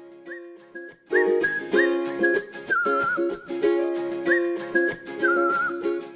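Background music: a whistled tune over plucked strings. It is thin for about the first second, then the full accompaniment comes in and the melody goes on with short slides and wavers.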